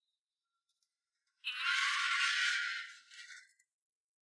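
Steel loading ramp of a low-bed trailer being swung up by hand: a harsh scraping, rasping noise that starts suddenly about a second and a half in and fades out over about two seconds.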